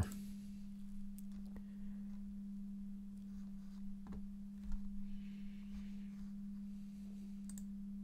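A steady low electrical hum on a single tone, with a few faint clicks scattered through it.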